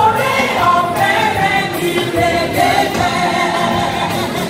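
A large crowd of voices singing a gospel praise song together, loud and unbroken.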